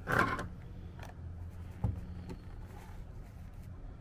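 Handling noise: a short scraping rustle at the start, then a single sharp click a little under two seconds in, over a steady low hum.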